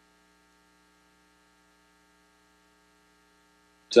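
Faint steady electrical hum made of several fixed tones, with no other sound. A man's voice starts again right at the end.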